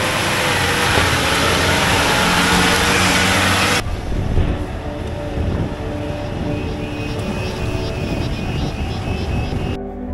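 Old jeep's engine running and its tyres working through thick mud, loud and rough for the first four seconds. After a sudden change it settles into a quieter, steady engine drone as the jeep drives on.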